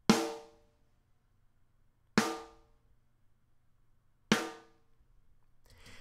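Three single snare drum hits about two seconds apart, each ringing out fully before the next: recorded snare samples played back through the close snare mic blended with the overhead mics.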